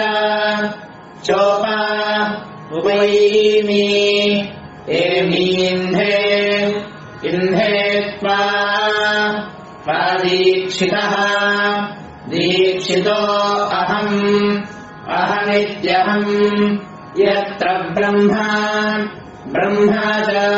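Sanskrit Vedic mantras chanted in a steady recitation tone, in phrases of about two seconds with short breaks for breath, over a steady hum.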